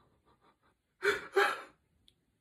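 Two short, sharp sobbing gasps from a man's voice about a second in: a forced, put-on attempt at crying.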